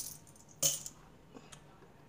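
Loose coins clinking in the hand: a brief jingle about half a second in, then a couple of faint clicks.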